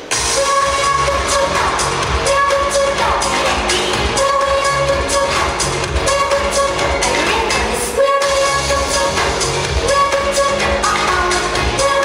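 Electronic pop dance track with a heavy steady beat, played loud over stage speakers. It starts abruptly and drops out for an instant about eight seconds in.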